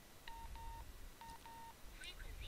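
Wouxun KG-816 handheld VHF radio beeping faintly as it is switched on: four short, steady mid-pitched beeps in two pairs.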